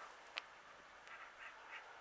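Near silence, with one faint click about a third of a second in and three faint, short sounds a little after a second.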